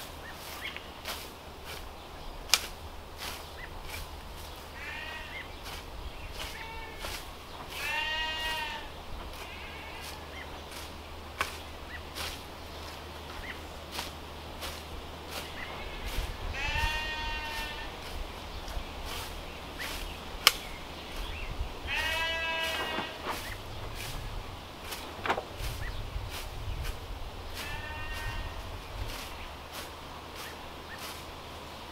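Lambs and goat kids bleating about five times, each call wavering in pitch, between short sharp clicks and swishes from a small hand scythe cutting grass; two sharp cracks stand out, near the start and in the middle.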